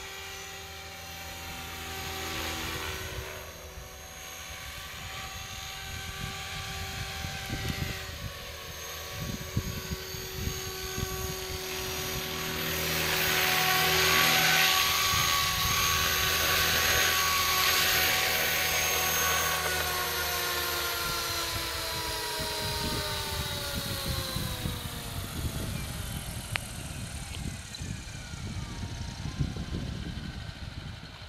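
Trex 500 electric RC helicopter in an Airwolf scale body: a steady motor and rotor whine, loudest around the middle while it hovers low and close. Over the last several seconds the pitch falls steadily as the rotor winds down after landing.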